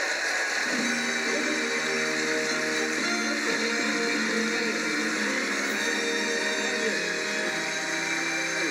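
Audience applause, joined about a second in by walk-on music, heard through a television's speaker.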